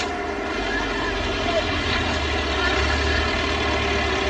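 Car engine running, its low rumble growing louder as it approaches.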